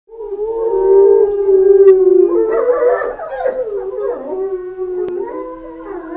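Gray wolves howling: long, wavering howls, with several voices overlapping in a chorus from about two and a half seconds in.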